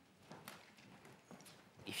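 Near silence in a large hall, with a few faint, scattered taps and rustles from people settling into their seats. A man's voice starts just at the end.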